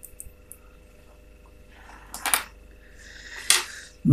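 Small metal-and-plastic parts handled by hand: a few light clicks, then two sharper knocks about two and three and a half seconds in, as a small switch with gold-plated contacts is set down on a wooden table.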